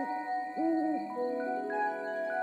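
A cartoon owl hoot sound effect: a soft two-note hoot about half a second in, with the tail of another at the very start. It plays over gentle chiming mallet notes in the background music, which add more sustained notes from about a second in.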